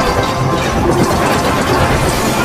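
A loud, dense jumble of many overlapping, effect-altered copies of a Samsung logo animation's sound effects and music playing at once, with no single tone or beat standing out.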